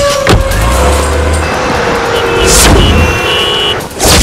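A thump, then a car engine revs and pulls away, over background music with a held note.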